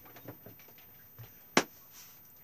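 Faint small handling noises, then one short, sharp knock or click about one and a half seconds in.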